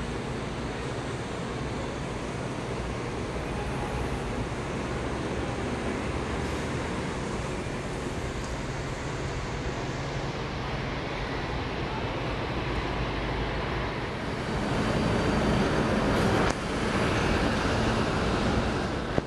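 Diesel bus engines idling, a steady low hum that swells louder in the last few seconds as a city bus comes close.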